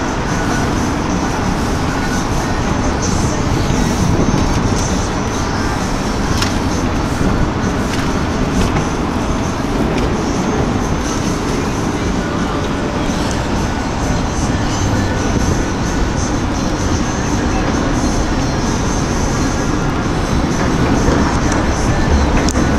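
Steady road traffic noise from the elevated freeways overhead, a constant wash of sound with no breaks.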